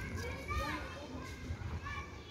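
Children's voices calling and chattering at play some way off, high-pitched and rising and falling, over a low steady rumble.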